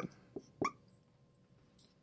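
Whiteboard marker squeaking twice briefly on the board in the first second, then near silence.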